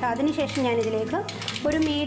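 A woman's voice speaking continuously over a steady low hum.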